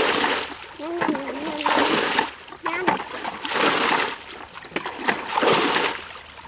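Muddy stream water being bailed with a plastic bucket: water is scooped and flung out in four heavy splashes, one every second and a half to two seconds.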